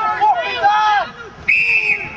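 A referee's whistle blown once: a short, steady, shrill blast about one and a half seconds in, after spectators' shouting.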